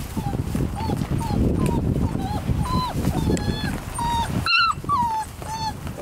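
6.5-week-old Vizsla puppies whining and yipping while they play, in about a dozen short, high calls, the loudest about four and a half seconds in. A steady rustle of wood-shaving bedding runs beneath them.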